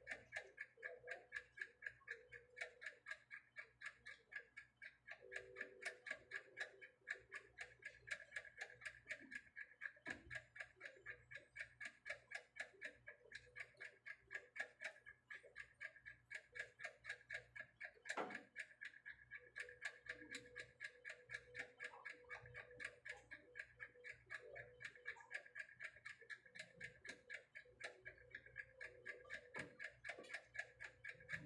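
Steady, even mechanical ticking, about three ticks a second, with one louder click about eighteen seconds in.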